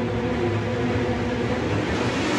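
A steady low rumbling drone, with faint held tones fading away under it.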